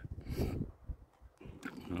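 A man's short wordless vocal sound and a breath in a pause between phrases, then his voice starting again near the end.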